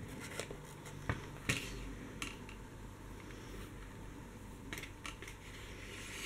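Quiet handling of a kraft cardboard notebook cover as elastic cord is drawn through its punched holes: a few light clicks and scrapes, spread out and soft.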